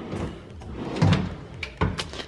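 Kitchen pantry drawers sliding on their runners and being pushed shut, caught by soft-close dampers so they don't bang. A dull thump comes about halfway and a sharp click near the end.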